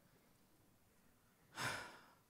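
Near silence, then about one and a half seconds in a single audible breath from a man, close on a headset microphone, swelling quickly and fading over about half a second.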